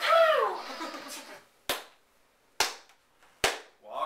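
A voice sliding down in pitch at the start, then three single sharp hand claps a little under a second apart.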